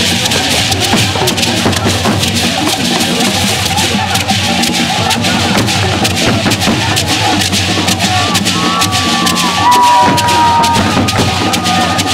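Many calabash gourd rattles are shaken together in a fast, dense, steady rhythm. Thin high held tones come in briefly near the end.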